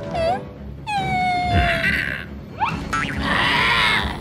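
Cartoon soundtrack: a string of sound effects and wordless character noises over background music. A long, slowly falling tone comes about a second in, and a loud, rough, growl-like sound comes near the end.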